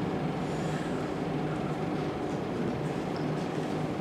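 Steady room noise in a hall: a low, even hum under a constant hiss, with no speech.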